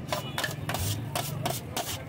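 A knife and a long metal spoon scraping and tapping on a flat steel griddle as chopped chicken shawarma filling is mixed. It comes as quick, irregular scrapes and clinks, a few per second.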